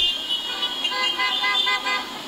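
Car horns honking in celebration, several held tones overlapping from about half a second into the sound.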